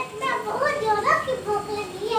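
A young boy talking in a high-pitched voice, in a language the recogniser did not write down.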